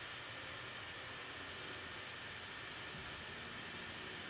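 Faint steady hiss of room tone with no distinct events; the lipstick going on makes no audible sound.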